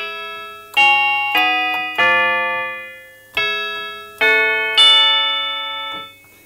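Maas-Rowe Vibrachime, an early-1950s tube-driven chime unit made as an add-on for a church organ, played from its keyboard. About six single chime notes are struck one after another, each ringing out and slowly fading.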